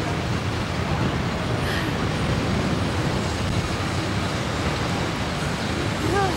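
A steady rush of wind buffeting the onboard camera's microphone as the SlingShot ride capsule swings on its bungee cords.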